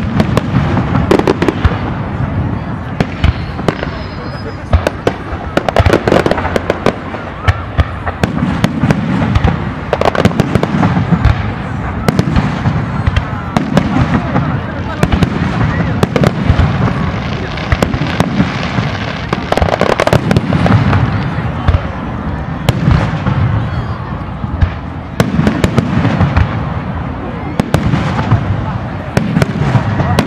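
Fireworks display: a continuous rapid string of sharp bangs and crackles over repeated deep booms, loud throughout.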